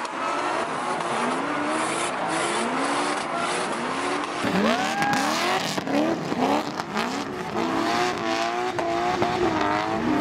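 BMW drift cars' engines revving in quick, repeated rising sweeps, over a steady hiss of tyres spinning and squealing as the cars slide sideways.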